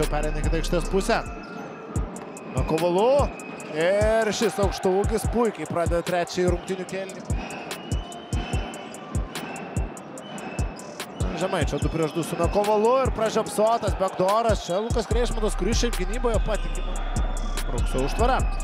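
Basketball being dribbled on a hardwood court, with a quick run of sharp bounces, and basketball shoes squeaking on the floor in short chirps among them.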